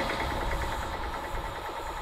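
A passing train rumbling by, its noise slowly fading away.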